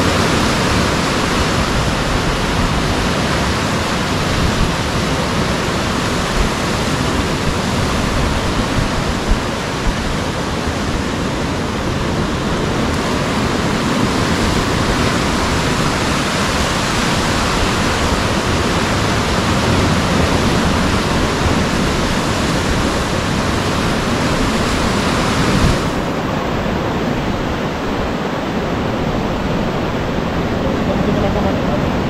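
Sea surf surging and breaking on the rocks below a cliff: a loud, steady rush of white water with no separate crashes standing out.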